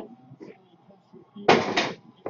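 A small cardboard box put down and slid on a desk: a sudden knock and scrape in two quick parts about a second and a half in.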